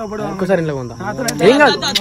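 Men talking in Telugu, with crickets chirping in the background.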